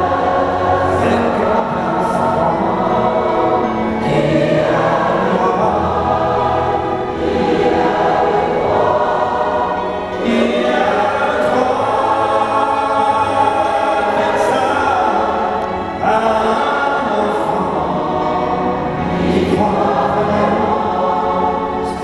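A massed choir of about a thousand voices singing with a symphony orchestra, in long held phrases that dip briefly every few seconds.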